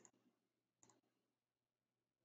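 Faint computer mouse clicks: two clicks about a second apart, each a quick double tick, in near silence.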